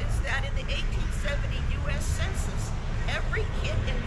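Open-air ambience of a gathered crowd: a steady low rumble with many short, high, sweeping chirps scattered through it, and faint voices.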